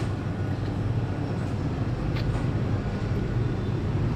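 Steady low hum of a convenience store's cooling equipment (refrigerated display cases and air conditioning), with a faint click about two seconds in.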